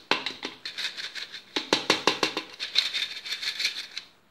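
Hand-operated metal flour sifter being worked over a steel bowl: a rapid, even rattling of the sifter's agitator against its mesh, with a brief pause about a second and a half in, cutting off at the end.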